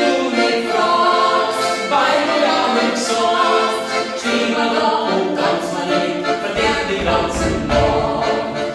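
A woman singing a folk song in Bavarian dialect, accompanied by a piano accordion.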